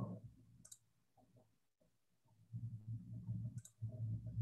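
Two faint computer mouse clicks, about three seconds apart, over a low background hum.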